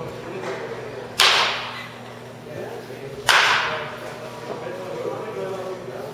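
A baseball bat hitting pitched balls twice, about two seconds apart. Each hit is a sharp crack that trails off in echo.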